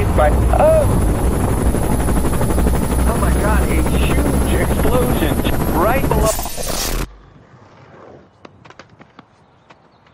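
A loud, steady, pulsing mechanical rumble with voices over it, which cuts off abruptly about seven seconds in. Faint scattered clicks and taps follow.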